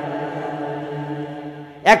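A man's voice holding one long, steady, chant-like note that slowly fades, before speech breaks in again near the end.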